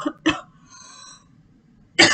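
A woman's short, sharp coughs: two close together at the start, a faint breathy intake, then another cough near the end.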